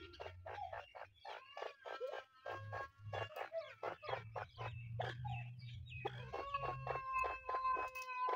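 Francolin hen and her chicks calling in a fast run of short chirps, several a second, with a brief pause about six seconds in.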